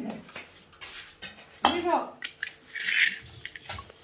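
Stainless steel plates and bowls clinking and knocking as they are handled and set down on a tiled floor, a series of short sharp clinks.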